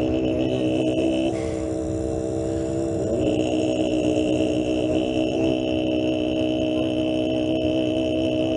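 Tibetan monks' throat-singing: one long, low held note, rich in overtones, with a high ringing overtone above it that fades out about a second in and returns about three seconds in.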